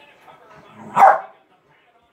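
A West Highland white terrier gives a single short, sharp bark about a second in, during rough play with another dog.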